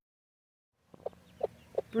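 Silence for about the first second, then chickens clucking: a few short, separate clucks.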